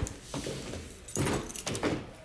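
Footsteps and phone-handling knocks on a wooden floor, with a brief metallic jingle from about a second in.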